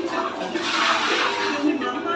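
Water poured over a person's legs and feet, splashing down onto the floor in a rush that lasts about a second.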